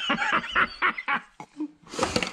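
A man laughing in a quick run of short breathy pulses that die away after about a second.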